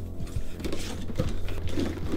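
Background music with cardboard and plastic handling noises as a toy box's flap is opened and its plastic blister tray is brought out.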